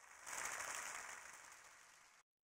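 Faint applause from a crowd of guests clapping, swelling briefly about a quarter second in and then fading away.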